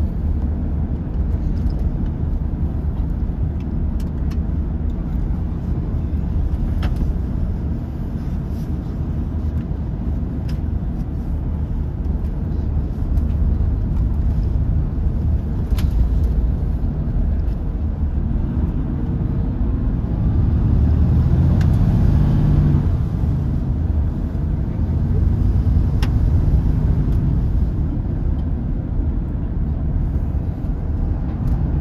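Volvo B11RT coach's rear-mounted six-cylinder diesel engine and road noise heard from inside the passenger cabin on the move: a steady low rumble. The engine note grows louder and higher about two-thirds of the way through, then settles. A few light ticks from the cabin sound now and then.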